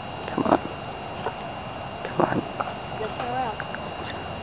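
Snatches of people's voices: two short loud bursts about a second and a half apart, then a brief wavering phrase near the end. Under them is steady background noise with a faint high-pitched whine.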